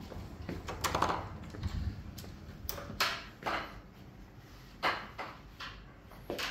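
Irregular footsteps and sharp knocks, about eight of them, spaced unevenly, as someone walks through a doorway into a room. A steady low hum drops away about two seconds in.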